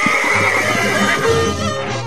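A horse whinnies, one long high wavering call in the first second, as Andean folk music with a steady stepping bass line starts up.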